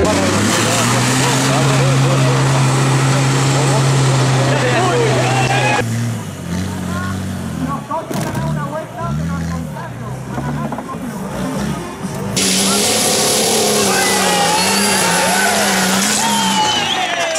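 Off-road 4x4 engines labouring on trial climbs, with people's voices over them. The sound cuts between clips about six and twelve seconds in. In the middle part an engine revs up and down over and over; in the last part a steady engine note runs under a loud hiss.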